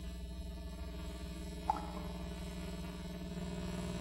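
A pause in speech: steady low hum and faint hiss of the recording, with one faint short sound about 1.7 s in.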